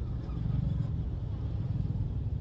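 Steady low rumble of a car, heard from inside the cabin while it is being driven.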